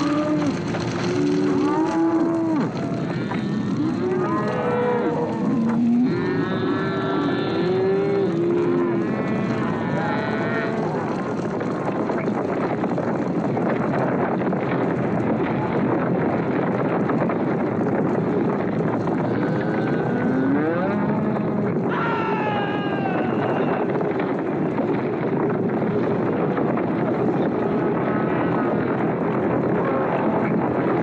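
A herd of cattle bellowing and lowing as it stampedes, over a steady din of hooves. The bellows come thickly in the first ten seconds and again a little past twenty seconds.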